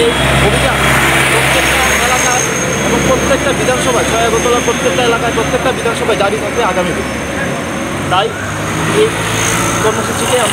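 A man talking over road traffic, with a vehicle engine's low drone underneath that drops away about three-quarters of the way through.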